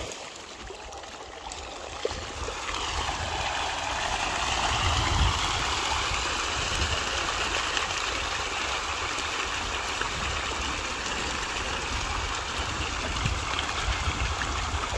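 A dense crowd of pond fish splashing and churning at the water's surface in a feeding frenzy on floating feed pellets. The splashing builds over the first few seconds into a steady rushing sound.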